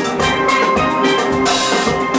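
Steel orchestra playing: many steel pans ringing out a melody and chords, with drum and cymbal strokes keeping the rhythm.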